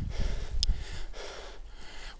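A cyclist breathing hard in repeated heavy breaths while pedalling, with wind rumble on the microphone underneath.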